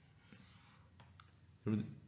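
A few faint clicks and taps of a stylus on a tablet while a box is drawn on the slide, then a man's voice starts near the end.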